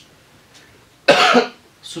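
A man's single loud cough about a second in, after a short quiet pause.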